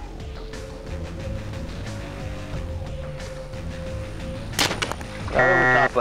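Background music with a steady low drone. About four and a half seconds in there is a single sharp snap as the compound bow is shot at the alligator.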